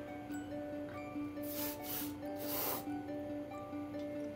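Background music, with three short hisses of insecticide sprayed from a thin nozzle into a crack, about one and a half to three seconds in.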